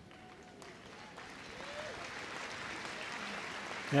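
Arena audience applauding, the clapping swelling gradually.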